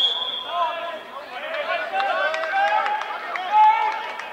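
Players and spectators shouting calls at a football match, several voices overlapping, with a high steady whistle at the start that fades out within about a second.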